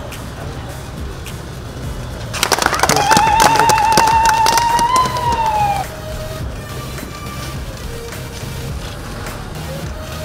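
Clapping breaks out about two and a half seconds in, with a long, high, wavering ululation over it that falls away and stops after about three seconds: the crowd's cheer at the unveiling of the commissioning plaque. Background music runs underneath.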